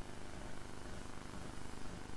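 Room tone: a steady low hum with faint hiss, no clear events.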